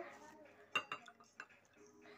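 A few light clinks of a glass cup handled on a hard countertop, the clearest a little under a second in.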